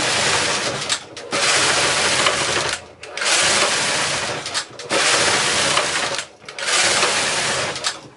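Double-bed knitting machine carriage pushed back and forth across the needle beds, knitting rows: a loud rushing clatter in about five passes of a second or so each, with short pauses between them as the carriage turns.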